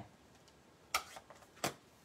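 Two sharp plastic clicks about two-thirds of a second apart, with a fainter tick between them, as small stamping supplies such as an ink pad case are handled and set down.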